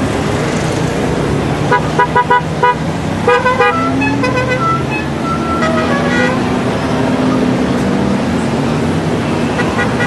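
A column of Honda Gold Wing touring motorcycles riding past with their engines running steadily. A run of short horn toots comes about two seconds in, with more toots and a few longer horn notes from about three to six seconds.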